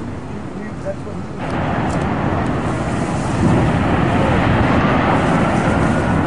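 Distant rumble of a high-rise building collapsing: a loud, even roar that comes in suddenly about a second and a half in and swells further a couple of seconds later, with faint voices under it.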